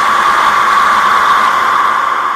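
Steady, loud noise drone with a hissing midrange and no bass, taking over where the guitars and drums of a black metal track stop.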